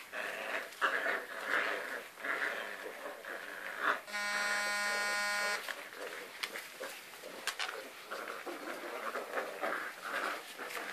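Several puppies tussling over a towel, with short uneven bursts of puppy growls and whines. About four seconds in, a steady flat buzzing tone, the loudest sound here, runs for about a second and a half and stops.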